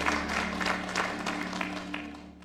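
Congregation applauding, scattered hand claps over a low chord held steady underneath, the whole gradually fading.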